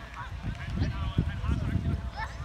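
Several high-pitched voices of youth football players and spectators shouting and calling out over one another as a play runs, over a low rumble of wind on the microphone.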